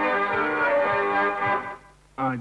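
Hohner accordion playing a Scottish folk tune, with held chords over a steady rhythmic bass. The tune ends about a second and a half in and dies away.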